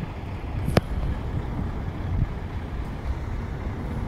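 Wind rumbling on a phone microphone, an uneven low buffeting, with a single sharp click about a second in.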